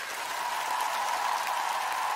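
Large audience applauding, an even, steady clatter, with a steady tone sounding through it from about a third of a second in.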